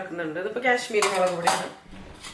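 A metal spoon clinks twice, about a second in and again half a second later, over talking.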